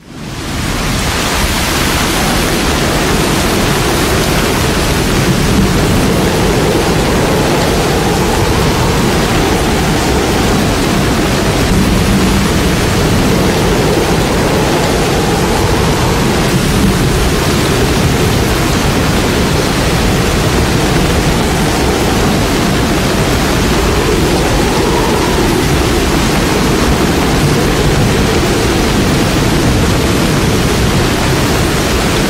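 Loud, steady rush of fast-flowing floodwater, an unbroken roar with no let-up.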